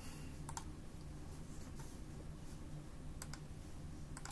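Faint computer mouse clicks, a quick pair about half a second in and another pair a little after three seconds, over a faint steady low hum.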